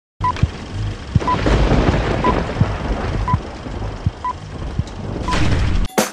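Short high beeps, about once a second, over a loud hissing, rumbling noise with scattered low thumps; it all cuts off suddenly near the end.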